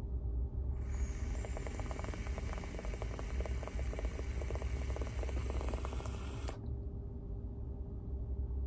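Electronic cigarette with a very low-resistance coil being fired through one long draw of about six seconds: a steady hiss of air through the atomizer with fine crackling sizzle of e-liquid on the hot coil, cutting off sharply when the draw ends.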